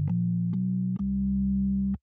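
Nord Stage 4's B3 tonewheel organ simulation in regular keyboard bass mode, with the 16' and 5 1/3' drawbars fully out, playing a short line of low bass notes. The notes change about every half second with a click at the start of each, and the last is held for about a second.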